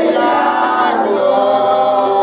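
Christian worship song: singing voices holding and gliding between notes.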